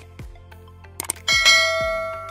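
A single bright bell chime, a notification-bell sound effect, strikes about a second and a half in and rings on, slowly fading. It sounds over background music with a steady beat.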